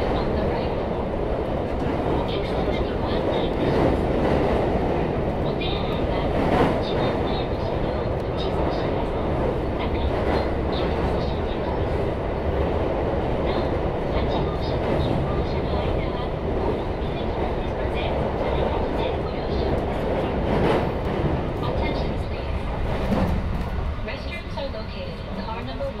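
Running noise of a JR 223 series electric train at speed, heard from inside the car: a steady rumble with clicks from the rails as it crosses a steel truss bridge. The noise drops a little near the end, when the train comes off the bridge onto ballasted track.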